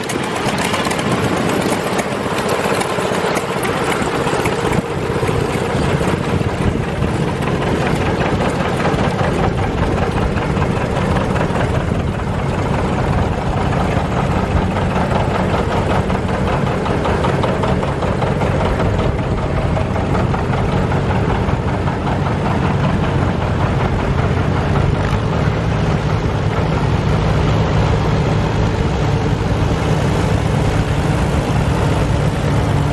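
Antique farm tractor engines running steadily as the tractors drive past one after another, among them a John Deere 70's two-cylinder engine.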